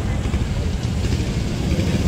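A low, steady engine rumble of idling motors, with voices of a crowd in the background.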